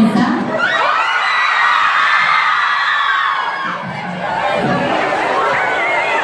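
A crowd of fans screaming and cheering in high voices. It swells about a second in and dies down after a few seconds, followed by scattered shouts.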